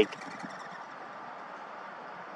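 Steady, faint outdoor background noise: an even hiss with no distinct sound events.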